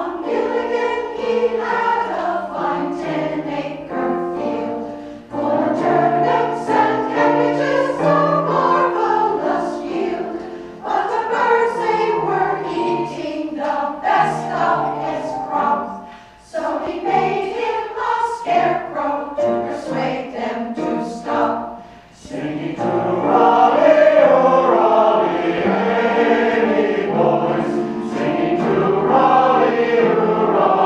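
Combined mixed choir of men's and women's voices singing, with short breaks between phrases every five or six seconds and fuller, louder singing over the last few seconds.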